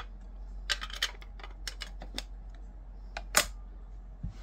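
A series of short, sharp clicks and taps from hands handling a stack of thick trading cards on a stone countertop, the loudest about three and a half seconds in.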